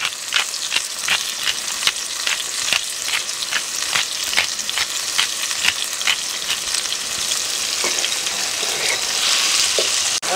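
Diced chicken and onion sizzling in hot oil in a pan, a steady frying hiss. Over the first six seconds a pepper grinder is twisted over the pan, clicking about two or three times a second.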